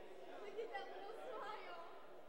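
Faint, indistinct chatter of people talking in a large indoor hall, with no clear words.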